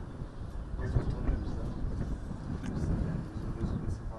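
Low rumbling outdoor background noise with faint, indistinct voices and a few small clicks.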